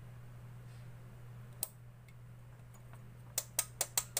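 Steady low electrical hum from the powered-up CRT tester box, with a single sharp click about one and a half seconds in and a quick run of sharp clicks near the end.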